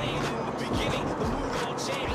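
A song with singing plays on the car stereo over the car's engine and road noise in the cabin.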